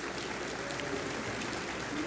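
Audience applauding, a steady even patter of many hands clapping.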